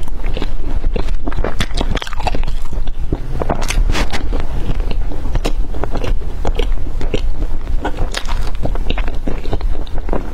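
Close-miked biting and chewing of soft, cheese-topped filled toast: a bite at the start, then continuous moist chewing full of small wet mouth clicks and crackles.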